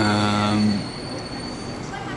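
A man's drawn-out hesitation sound, a held "eee" lasting under a second. Under it and after it runs a faint, steady, high-pitched whine.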